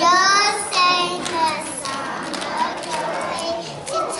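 Young children singing together in high voices, with scattered hand claps through the second half.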